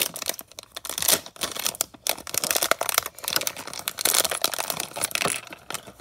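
Shiny plastic LEGO minifigure blind bag being crinkled and torn open by hand: an irregular run of crackles and rustles.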